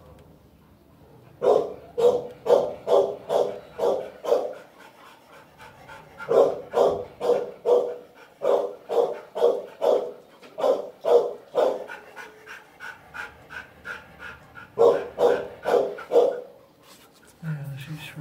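A dog barking in a steady run, about two barks a second, in three loud bouts with fainter barks between them.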